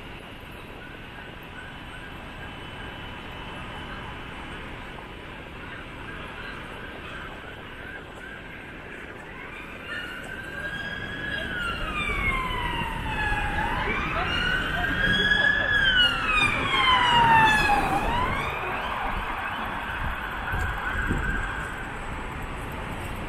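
Emergency vehicle siren in a wailing pattern, rising and falling in slow sweeps. It comes in about ten seconds in, grows louder, then fades after a quick drop in pitch, over steady city street traffic noise.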